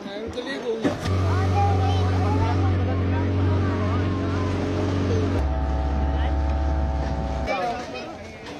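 An engine runs at a steady speed under voices. About five seconds in its pitch steps down to a lower steady speed, and the sound ends abruptly near the end.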